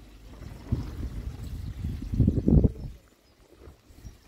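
Pond water sloshing and splashing, low and muffled, swelling to its loudest about two and a half seconds in and then dying away.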